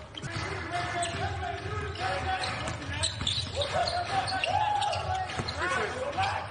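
Court sound of a basketball game in an empty arena: players and coaches shouting calls, with a basketball bouncing on the hardwood.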